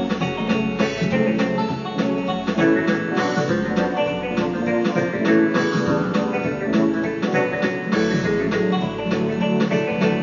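Acoustic guitar being played, a steady stream of quickly picked notes.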